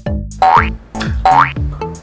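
Playful background music with a bouncing bass line and two quick upward-sliding cartoon sound effects, one about half a second in and one near the end.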